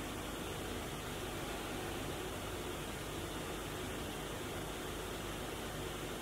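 Steady, even hiss of room tone and recording noise, with no distinct sound events.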